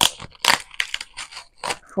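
Mail packaging being handled: a quick run of short crinkling, crackling rustles.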